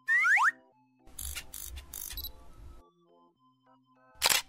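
Cartoon sound effects over soft children's background music: a quick rising boing in the first half second, then about two seconds of rattling, rustling noise with a low rumble.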